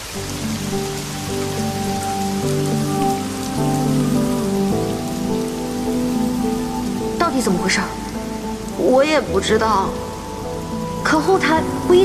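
Steady rain falling on a car, under a slow background music score of held notes. A higher melodic line with sliding pitches joins in over the second half.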